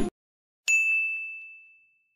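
A single bright, bell-like ding sound effect about half a second in: one clear ringing tone that fades away over about a second.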